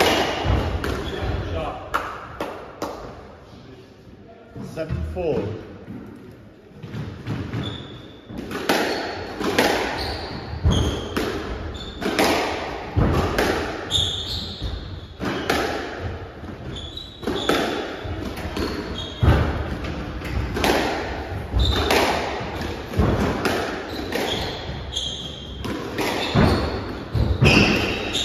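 Squash rally: the ball cracks off rackets and the court walls about once a second, and shoes squeak on the wooden court floor. There is a quieter lull a few seconds in before play picks up again.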